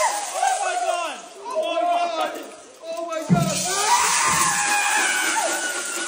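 Several people shouting, screaming and whooping excitedly, with no clear words, over background music. There is a sudden low thump a little past halfway.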